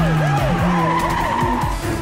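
Police siren wailing in quick rising-and-falling cycles, about three a second, over tyres skidding and a car engine, with music underneath.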